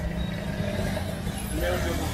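A vehicle engine running with a steady low hum, with people talking indistinctly, mostly in the second half.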